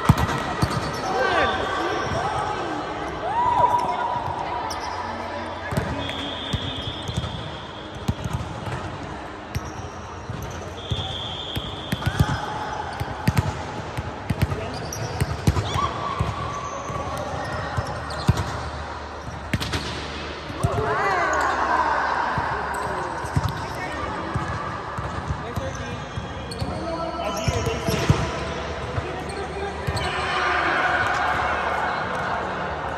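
Indoor volleyball game: sharp smacks of the ball being spiked, passed and hitting the hard court floor, with players' voices calling and shouting between and during rallies.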